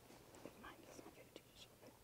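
Near silence, with faint whispering.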